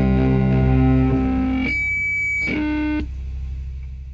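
The closing seconds of a rock track. Sustained guitar chords ring over a low drone and thin out, with a short high held note about halfway through, then fade away toward the end.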